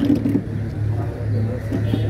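A steady low motor hum that grows stronger about a second in, with brief crowd voices near the start.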